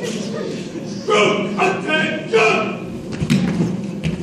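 Three short shouts in quick succession, between about one and two and a half seconds in, echoing in a large hall. A few thumps follow as the men on stage spring up from push-up position.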